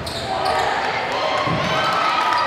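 Basketball bouncing on a hardwood gym court during live play, under a commentator's voice.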